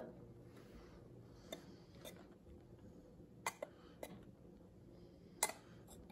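A metal spoon clicking now and then against a glass measuring bowl while powdered sugar is spooned out, over quiet room tone: a few light clicks, the loudest near the end.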